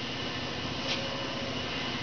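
Steady mechanical hum and hiss of running shop machinery, with no distinct strokes or impacts.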